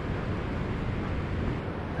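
Steady wash of ocean surf on a beach, mixed with wind on the microphone.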